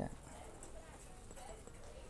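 Faint footsteps on a hard shop floor over quiet store background noise.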